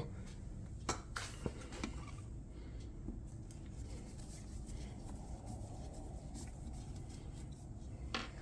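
A few faint clicks of a screwdriver and metal parts being handled, four within the first two seconds, then only a low steady background hum while the small screw is turned.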